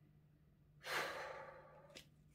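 A woman's audible breath, heard once about a second in and fading out within a second, against faint room tone.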